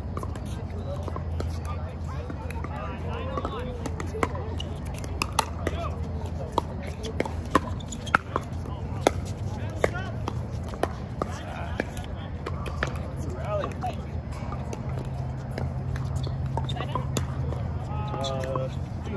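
Pickleball paddles hitting a hard plastic ball during rallies: a string of sharp, irregular pops, the loudest through the middle of the stretch, with fainter pops from neighbouring courts. Low background chatter and a steady low hum run underneath.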